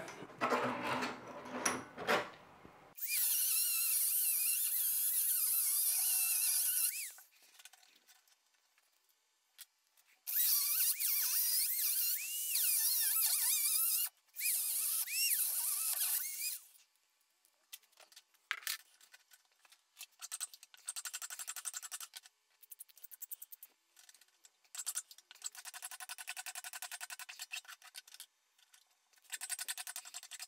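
Handheld rotary tool with a cut-off disc cutting steel threaded rod, in two runs of a few seconds each, its high whine wavering in pitch as the disc bites. In the second half, quieter runs of rapid rasping strokes from a hand file on the rod.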